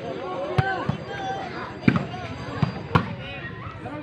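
A ball being struck hard three times during a volleyball rally, sharp smacks about a second apart, over the steady chatter of a large crowd of spectators.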